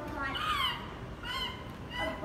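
A child's high-pitched voice making two short calls without clear words: the first falls in pitch about half a second in, and the second comes about a second and a half in.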